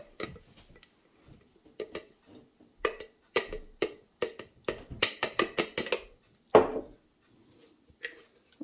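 Plastic blender cup tapped and knocked against a glass jar to shake ground dried mushroom out of it: a run of sharp taps and knocks, sparse at first, quickening in the middle, with one loudest knock about two-thirds of the way through.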